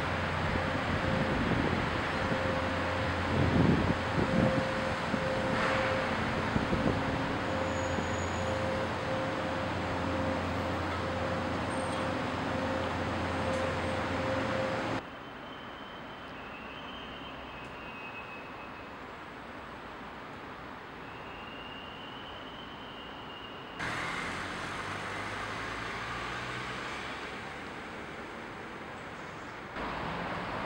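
Steady city traffic noise with a constant low hum and a faint steady tone. About halfway through it cuts suddenly to a quieter outdoor background with a few faint high chirps.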